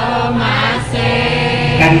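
A Javanese-language song sung with music, the voice holding long notes over a steady accompaniment.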